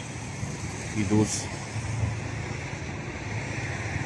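Steady low motor-vehicle engine rumble, with a short spoken word about a second in.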